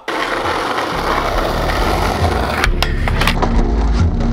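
Skateboard wheels rolling on rough asphalt with a deep rumble, a few sharp clacks about three seconds in, then music coming in near the end.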